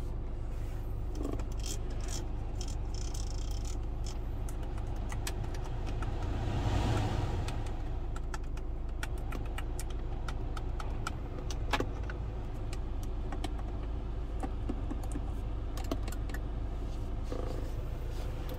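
Clicks of the Hyundai Tucson's climate-control buttons and touchscreen being pressed, many in quick succession through the second half, over a steady low hum in the car's cabin.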